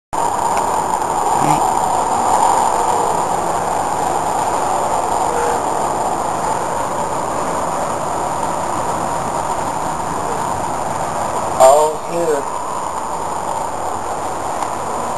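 Steady outdoor rushing noise, like distant traffic. A short vocal sound comes about three-quarters of the way in, the loudest moment, followed by a smaller one.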